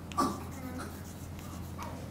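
Chalk writing on a blackboard: a run of faint scratching strokes, with a brief louder sound just after the start. A steady low hum lies underneath.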